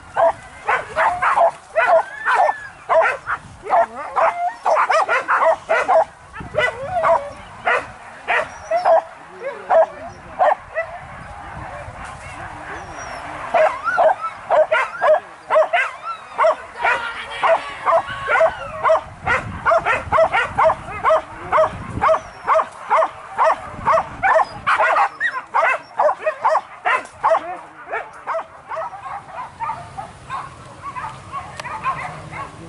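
Hunting dogs barking and yelping rapidly and without pause, several voices overlapping, as the pack works a wild boar hunt.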